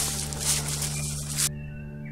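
Dry leaf litter and twigs rustling and crackling as they are handled and gathered from the ground. The rustle cuts off abruptly about one and a half seconds in. Background music with sustained low tones plays throughout.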